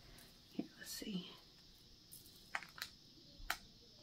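A few faint, separate clicks of a metal chain necklace's links being handled, three of them sharp ones in the second half, with a soft murmur about a second in.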